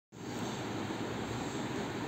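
Steady background noise of the room, an even hiss-like rumble with no distinct events.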